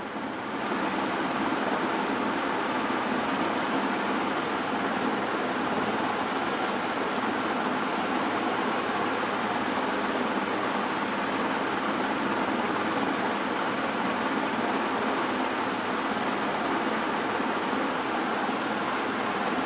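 Steady, even noise with no distinct events, which sets in just as the talking stops and holds at one level.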